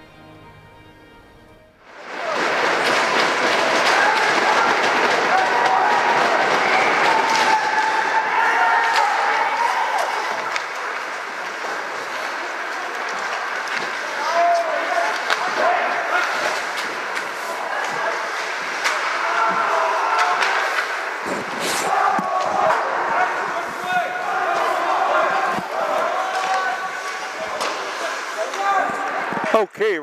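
Ice hockey rink crowd and players: a loud wash of many voices shouting and cheering that starts suddenly about two seconds in, with a few sharp knocks.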